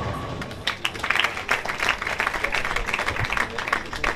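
Spectators clapping for a ten-pin bowling strike, the clatter of the falling pins dying away at the start.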